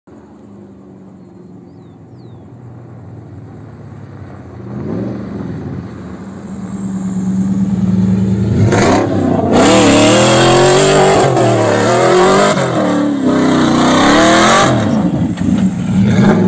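Volkswagen Amarok pickup's engine growing louder as it approaches, then revving up and down repeatedly from about nine seconds in as the truck slides on the dirt road, with loud gritty tyre noise on the loose dirt.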